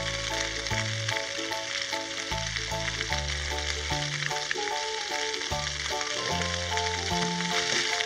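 Strips of pork skin frying in hot oil in a pan for cracklings: a steady, dense sizzle, with background music playing.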